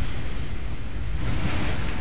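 Heavy summer rainstorm: a downpour with wind, heard as a steady noise.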